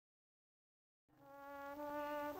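Silence, then about halfway through a sustained orchestral chord fades in and swells, the opening of the film's music.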